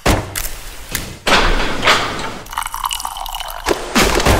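Water poured into a small porcelain tea cup over green tea leaves, splashing and trickling as it fills. Several short knocks come in the first second.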